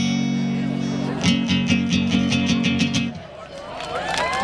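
Guitar played through a PA system: a held chord, then a run of quick strums that stops about three seconds in, closing the song.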